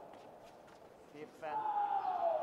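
A quiet first half, then a person's voice coming in about halfway through with a long, slowly falling tone.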